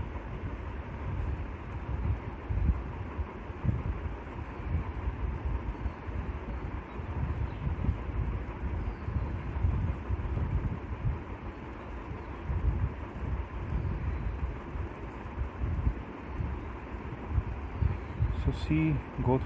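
Steady background rumble and hiss, strongest in the low end and flickering in level, with a faint steady hum.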